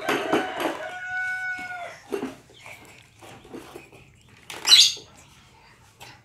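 Plastic toy ride-on motorbike banging and clattering against a hard floor, then a high, steady drawn-out call lasting about a second that drops in pitch at its end. Scattered light knocks follow, with a short noisy burst near the end.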